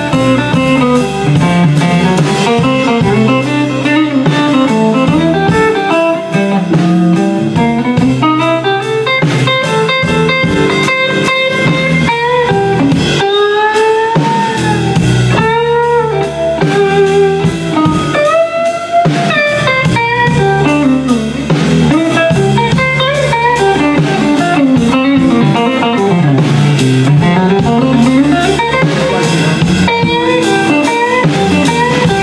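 Electric blues band playing live: an electric guitar plays a solo of single-note lines full of bent, gliding notes, over bass guitar and drums.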